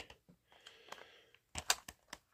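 A few small, sharp plastic clicks close together about one and a half seconds in, as the wheels of a Playmobil DeLorean toy car are handled and folded for hover mode.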